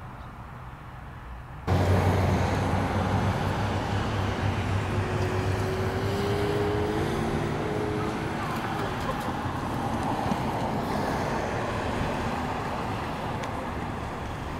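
Steady road noise of vehicles on a highway, starting abruptly about two seconds in, with a low engine hum for the first few seconds. Before that, quieter outdoor ambience.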